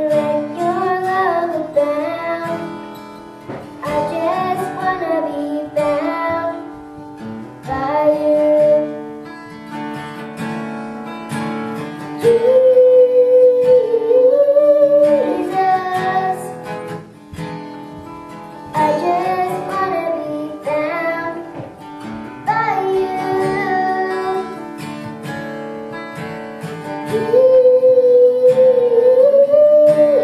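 A girl singing a gospel song into a microphone over strummed acoustic guitar. The voice holds two long notes, about midway and near the end.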